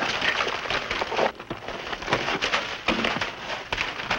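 Frozen ice being dug and scraped loose from a wall of packed cartons: a busy run of irregular crunches and crackles as chunks break away.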